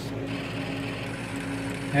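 A steady hum holding one pitch, with a faint, even whir behind it: the background noise of powered-up lab equipment idling.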